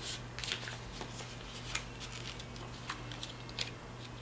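Planner sticker sheet being handled and stickers peeled off their backing: a few short papery crackles spread over the four seconds, over a low steady hum.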